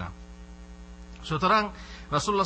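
Steady electrical mains hum picked up in the microphone recording, a low drone heard clearly in a pause of speech. About a second and a half in, a man's voice briefly cuts across it.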